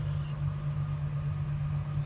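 Caravan air conditioner running: a steady low hum with a faint even hiss above it.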